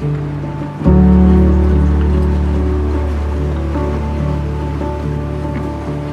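Background music of long held notes over a deep, steady bass that comes in, louder, about a second in.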